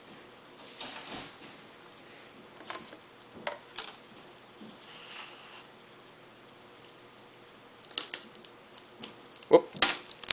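Handling of a thin plastic deli container and its lid: a few faint scattered clicks and taps, then a louder quick cluster of clicks near the end.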